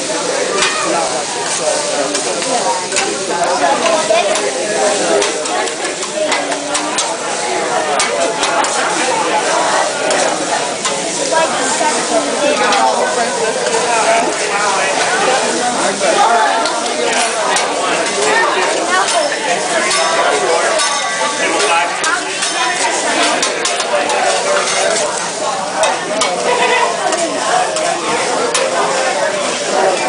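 Fried rice sizzling on a hot flat steel griddle as the chef stirs and chops it with metal spatulas, with frequent clicks and taps of the spatulas on the steel.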